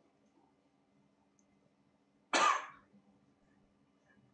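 A single loud cough about two and a half seconds in, over a quiet room with a steady low hum.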